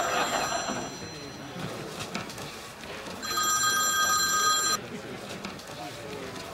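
Telephone ringing: a ring fades out just under a second in, and another ring comes about three seconds in and lasts a second and a half.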